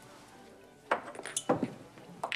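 Glass bottles and glassware clinking and being set down on a wooden bar: a quick cluster of sharp clinks starting about a second in, with a heavier knock about halfway through.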